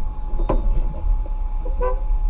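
Low engine and road rumble inside a moving car, under a steady thin whine, with a sharp click about half a second in.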